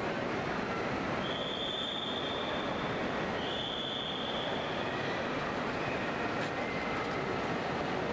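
Steady, dense outdoor hubbub of a busy terminal forecourt, with two long high-pitched beeps of about a second each, a second or so apart.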